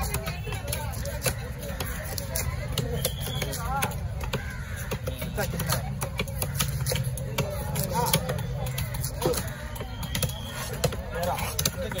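A heavy knife chopping a fish into steaks on a wooden block: a run of sharp, irregular knocks as the blade goes through flesh and backbone into the wood. Market chatter and a low rumble run underneath.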